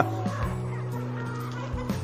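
A flock of four-month-old Mwendokasi chickens clucking in their pen, over background music with steady held notes.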